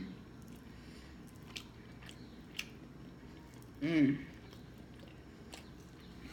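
A person quietly chewing a mouthful of chicken and fried rice, with a few faint clicks, and a short hummed "mm" of enjoyment about four seconds in.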